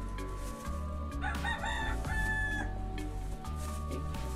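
A rooster crows once, starting a little over a second in and lasting about a second and a half, ending on a held high note, over a bed of background music.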